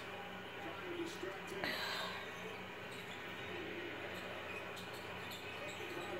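Faint voice from a televised basketball game over a steady low hum in the room.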